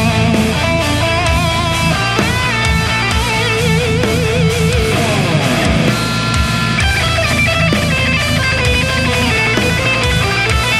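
Distorted high-gain electric guitar playing a heavy-metal lead over a backing mix with drums: a bend up about two seconds in, then held notes with wide vibrato, and a falling pitch slide around halfway through.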